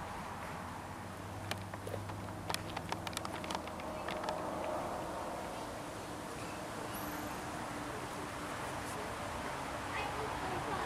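Outdoor background with a steady low hum. From about one and a half seconds in there is a quick run of about a dozen sharp clicks lasting a couple of seconds, and a single brief high chirp comes near seven seconds in.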